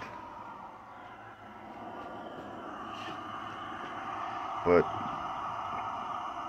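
Small canister-top camp-stove burner on a propane cylinder running with a steady, even hiss, its flame heating an engine cylinder to free a stuck piston. The hiss swells in about a second and a half in and then holds level.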